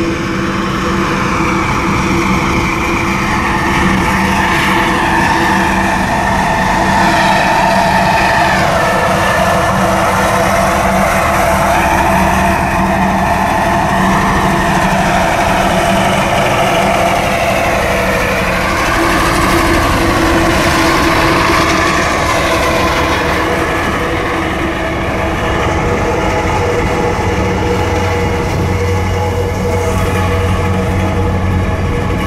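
Onewheel electric board's hub motor whining as it rides, several pitches gliding up and down together with speed, over a steady rush of rolling noise.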